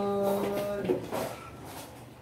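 A person's voice holding one steady, even-pitched note for about a second, then trailing off into a few softer short vocal sounds.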